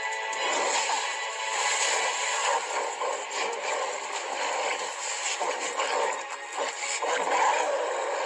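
Cartoon soundtrack music with dramatic action effects over it, including splashing as a foot slams into water.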